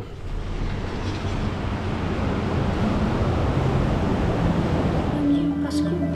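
Steady rush of ocean surf and wind, swelling over the first couple of seconds as a glass balcony door opens onto the beach. Background music comes in near the end.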